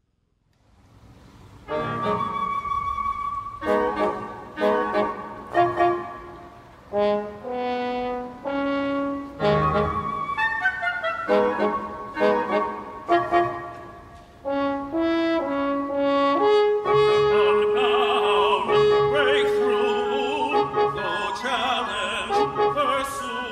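Live chamber ensemble with brass instruments playing a classical piece. After a near-silent opening second, it plays short, separate chords, then longer held notes with a wavering vibrato toward the end.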